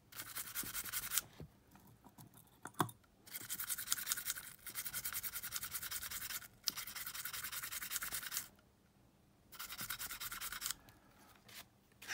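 A small brush scrubbing the inside of a Sony Walkman WM-EX610 cassette mechanism around the drive motor and flywheel. It works in quick back-and-forth strokes, in several bursts of one to three seconds with short pauses between them.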